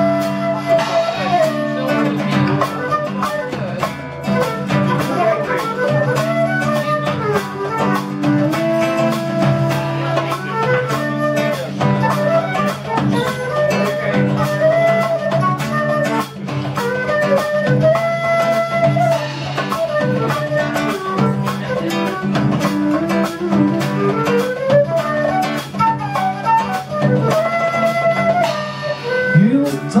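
Live acoustic band playing an instrumental passage: acoustic guitar over steady hand percussion, with a lead melody that slides between notes.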